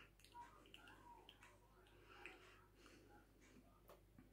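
Near silence with a few faint clicks and soft mouth noises as someone tastes a drink.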